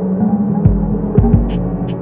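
Experimental electronic music: a steady low droning hum with several deep thumps that drop in pitch, and a few short hissing clicks in the second half.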